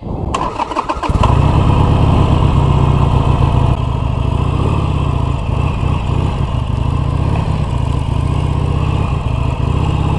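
Harley-Davidson Sportster 883's air-cooled V-twin being started: a second or so of cranking, then the engine catches and runs steadily.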